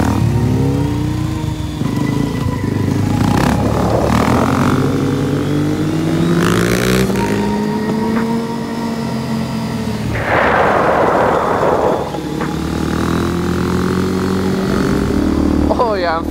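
Suzuki DR-Z400SM supermoto's single-cylinder four-stroke engine running through a long wheelie, its pitch rising and falling with the throttle. A rough hiss rises over it for about two seconds past the middle.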